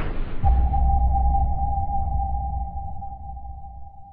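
Logo sting sound effect: a whoosh that gives way, about half a second in, to a deep boom with a single steady ringing tone over it, both slowly fading out.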